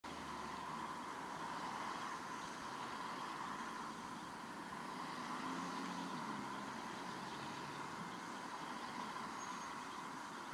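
Steady road traffic on wet asphalt: cars passing with tyres hissing on the wet road, one engine a little louder near the middle.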